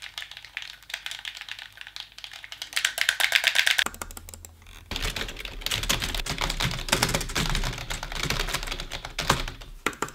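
Fast typing on a computer keyboard: a dense, rapid clatter of keystrokes, with a brief pause about four seconds in.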